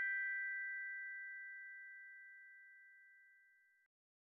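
The final bell-like chime of a closing theme jingle rings out. A few clear high tones fade away steadily and stop just before the end.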